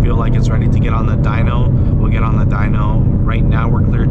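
A man talking over the steady low drone of a Roush-supercharged Ford Mustang GT's V8, heard from inside the cabin while cruising at a constant speed.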